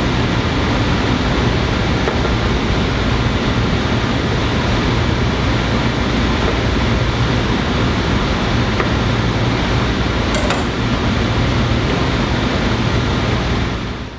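Steady ventilation-fan noise filling a commercial kitchen, with a low hum under it and one brief high tick about ten and a half seconds in.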